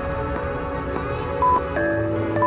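Workout background music with one short, steady beep from an interval timer about one and a half seconds in. The beep is a countdown signal for the last seconds of a work interval.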